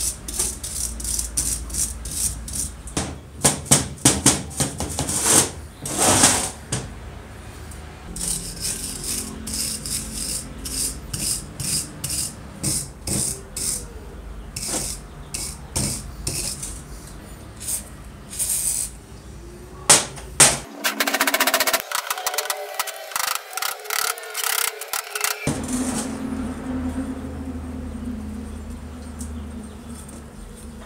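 A hand-held metal blade scraping rust and caked grime off an old steel vise, in quick repeated strokes with short pauses. About two-thirds of the way in comes a few seconds of faster, finer scratching.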